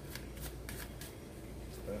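A tarot deck being hand-shuffled: a quick, irregular run of light card flicks and slaps, several a second, as the deck is shuffled to draw a clarifying card.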